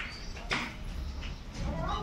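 A few short, high-pitched animal calls over a low background hum.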